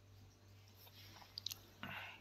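Near silence over a steady low hum, with a few faint clicks near the end.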